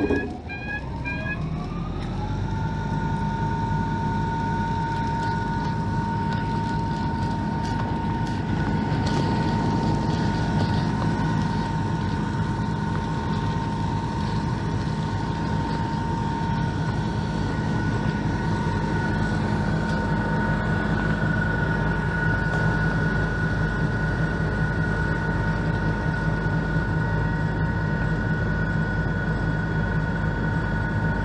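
A few short beeps, then a heavy engine revs up over about two seconds and holds steady at high revs for the rest of the time, with a steady two-note whine above its low running sound.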